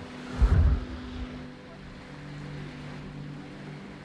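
Naval surface drone's motor running steadily as the boat speeds across the water, a low even hum. A heavy low rumble comes through about half a second in and lasts under a second.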